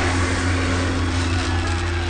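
A large gong ringing on after being struck by a swinging log ram, a deep steady hum with a few held higher tones that slowly fade.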